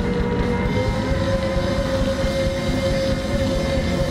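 Live rock band playing loudly through a PA, the full band sound dominated by one long held note that steps slightly up about a second in.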